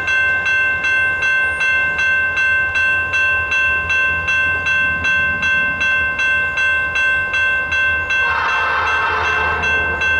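Grade-crossing warning bell ringing steadily, about three strikes a second, over the low rumble of approaching EMD SD40-2 diesel locomotives. A short burst of broader, higher sound rises near the end.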